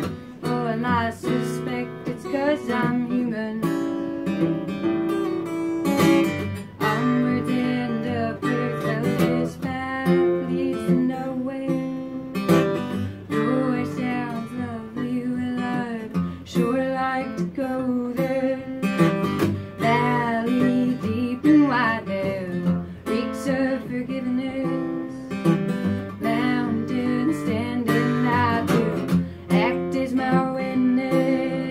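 Solo acoustic guitar playing a blues song, with a woman's singing voice coming in at times over it.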